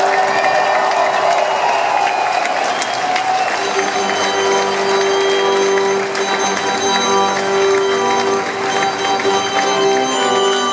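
Live band holding sustained chords while a concert audience cheers and applauds. The crowd noise swells in the first couple of seconds and then fades under the band's long held notes.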